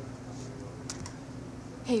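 Laptop keyboard clicking, with one sharp click about a second in, over a steady low hum.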